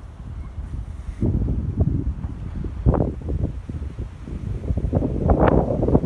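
Wind buffeting a phone's microphone: an irregular low rumble that gusts louder about a second in and again near the end.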